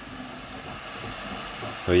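Flashforge 3D printer running mid-print, giving a steady whir from its fans and stepper motors. A man's voice starts near the end.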